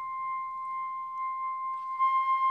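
Chamber music thinned to a single high note, held steadily and almost pure in tone, with the rest of the ensemble silent.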